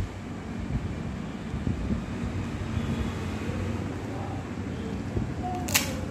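Steady low rumbling background hum, like a running motor or fan, with a single sharp click about three-quarters of a second before the end.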